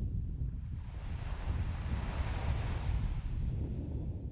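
Small waves washing up on a sandy beach, one wash swelling about a second in and fading away near the end, over a low rumble of wind on the microphone.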